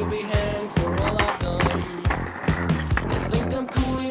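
Background music with a steady beat and a melody, over the sound of a skateboard's wheels rolling on asphalt.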